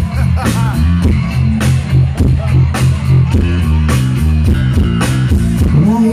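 Live rock band playing an instrumental passage: electric guitars, bass guitar and drum kit with a steady beat, loud.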